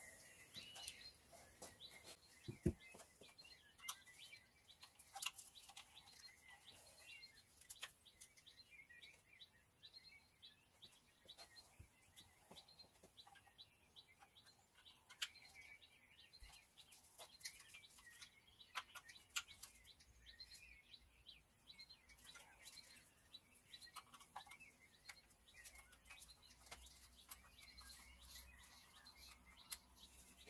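Near silence with scattered faint clicks and taps of metal parts and a tool being handled at a diesel engine's injectors, a few sharper ones standing out, over faint high chirps.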